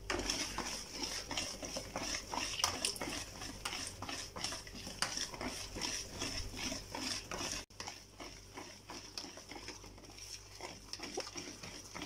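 Wire whisk beating a thick semolina batter in a plastic bowl: quick, irregular wet stirring strokes with the whisk clicking against the bowl. The strokes grow quieter in the second half.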